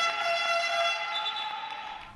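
Basketball game buzzer sounding one long, steady horn tone. Its pitch steps slightly higher about a second in, and it fades out at the end.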